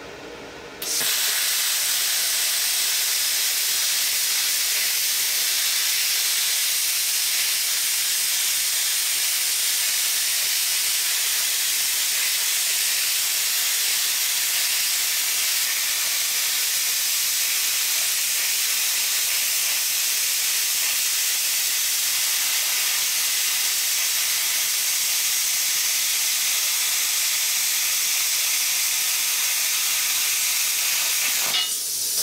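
Plasma cutter cutting through 3 mm steel plate at 50 amps on 220 volts: the arc and air stream hiss, starting suddenly about a second in and holding steady.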